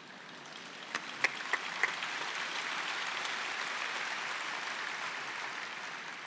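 Audience applauding: a few scattered claps about a second in, swelling into steady applause.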